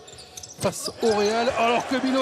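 Basketball game broadcast sound: a basketball bounces on the hardwood court about half a second in, then a TV commentator talks over the arena.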